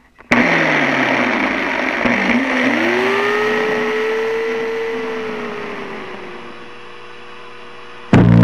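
Two-stroke chainsaw engine coming in suddenly and running loud, its revs rising about two and a half seconds in, holding, then slowly dropping back toward a lower, quieter running near the end.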